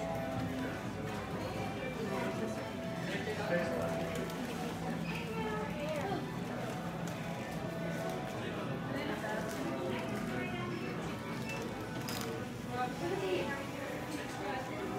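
Indistinct chatter of many shoppers over background music in a department store.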